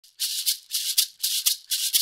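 Music: a lone shaker keeping a steady rhythm, about four strokes a second in a long-short pattern.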